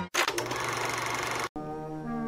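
Film projector running, a rapid even mechanical clatter. About one and a half seconds in it cuts off and a sustained orchestral chord begins.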